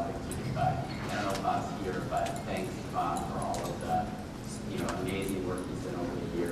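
A man speaking, too indistinct for the words to be made out, with a few light clicks.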